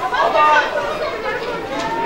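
Several voices talking and calling out at once, overlapping chatter of players on a football pitch.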